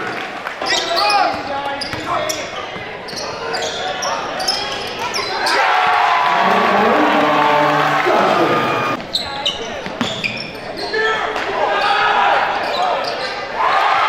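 Live game sound of a basketball game on a gym court: a ball bouncing and sneakers squeaking on the floor, with players and coaches shouting.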